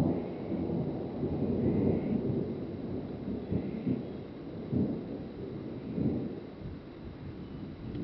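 Thunder rumbling low and rolling through the whole stretch, swelling and fading several times.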